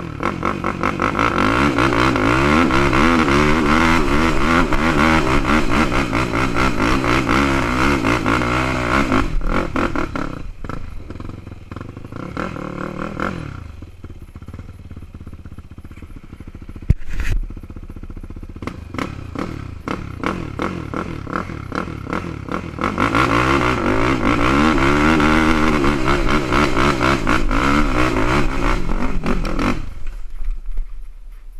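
ATV engine revving up and down under throttle while riding a trail, loud for the first nine seconds, dropping to a lower, quieter running in the middle with one sharp knock, then revving hard again near the end.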